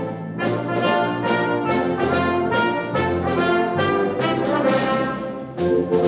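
Wind band playing live, with trombones, tuba and euphoniums leading over flutes and saxophones, in sustained chords with regular accents. The sound dips briefly shortly before the end, then comes back in loudly.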